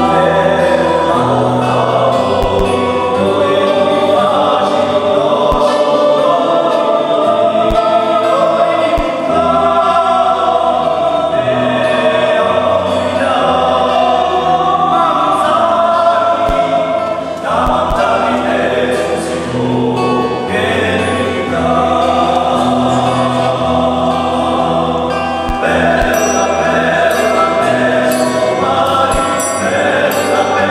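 Corsican polyphonic chant: a group of voices singing held, interweaving lines in close harmony over sustained low notes, in the reverberant acoustics of a church.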